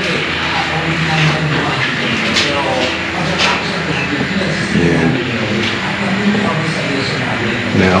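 People talking in the background over a steady noise, with a few light knocks.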